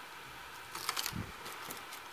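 Protective plastic film being peeled by hand off an aluminium HDD caddy: faint crackles and small ticks, bunched about a second in.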